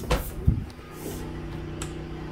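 Westinghouse 9500/12500 dual-fuel portable generator running steadily under a heavy household load, heard as a low hum through a window. Two short knocks come near the start, the louder about half a second in.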